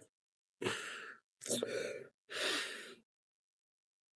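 A man sighing heavily: three long, breathy exhalations in quick succession, starting about half a second in, in grief after a death.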